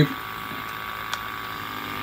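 UltraRAE 3000 gas detector's small internal sampling pump running steadily, drawing air through a freshly fitted benzene separation tube. There is a single light click a little past the middle.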